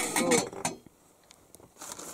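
A single sharp clink of an enamel lid set on an enamel cooking pot, followed by a few faint light ticks.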